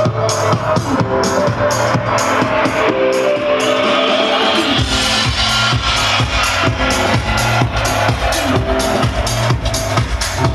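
Techno house DJ mix playing loud over a club sound system, with a steady four-on-the-floor beat. A few seconds in the bass and kick drop out while a rising hiss builds, and the kick and bass come back in just under five seconds in.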